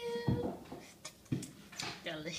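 A young child's held vocal note trailing off right at the start, then two soft thumps about a second apart, with a fainter knock near the end.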